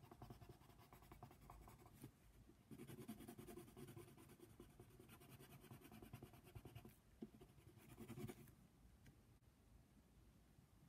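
Faint scratching of a wooden coloured pencil shading on paper in quick back-and-forth strokes, growing louder a few seconds in, with a short burst just before it stops about eight seconds in.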